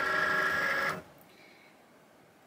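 Cricut Maker cutting machine loading the mat after the insert-mat button is pressed: its motors whine steadily as the rollers draw the mat in and the tool carriage moves, then stop abruptly about halfway through.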